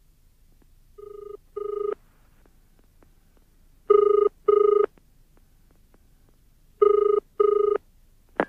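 A telephone ringing with a double ring, the British ring pattern: three double rings about three seconds apart, the first pair quieter.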